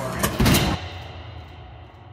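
A short loud thump about half a second in, after which the sound fades down to a faint low hum.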